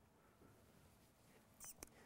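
Near silence: room tone in a pause in the talk, with a faint brief click near the end.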